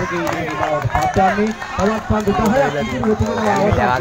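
Several people's voices shouting and calling out over one another during play.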